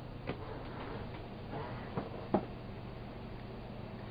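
Quiet room tone with a steady low hum, broken by a few soft clicks, the sharpest a little over two seconds in.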